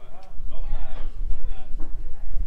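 A man's voice speaking briefly, over a low rumble that comes in about half a second in and carries on.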